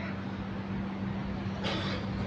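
A steady low hum with an even background hiss, in a short gap between spoken phrases.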